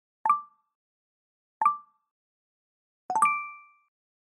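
Chat-message pop-up notification sound effects: three short pings about a second and a half apart, each one as a message bubble appears. The last is a quick flurry of strokes whose tone rings on a little longer.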